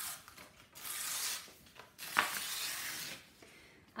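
A large sheet of paper being torn by hand in three long rips with short pauses between them.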